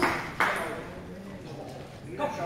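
Table tennis ball clicking off bats and table, the last two strokes of a rally about 0.4 s apart, each ringing in a large, echoing sports hall, then the play stops.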